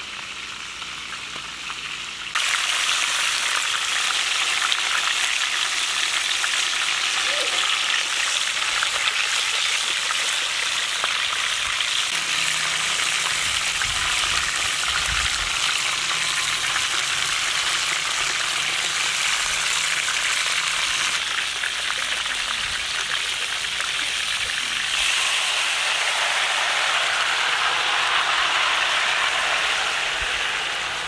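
Chicken pieces frying in hot oil in a large pan over a wood fire, a steady loud sizzle that starts abruptly a couple of seconds in. Late on, tomato sauce is poured over the chicken and the sizzle grows louder and fuller.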